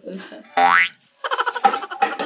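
Edited-in cartoon sound effect: a quick upward-sliding boing, like a slide whistle, followed by a short, rapid music sting.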